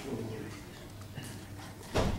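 Faint off-microphone voices over a steady room hum, ending in a single sharp knock.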